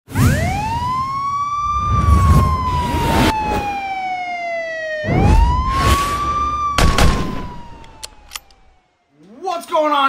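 Wailing siren sound effect in an animated intro: the siren rises and then slowly falls, twice, over heavy whooshing hits, and fades out about eight seconds in. A man starts speaking just before the end.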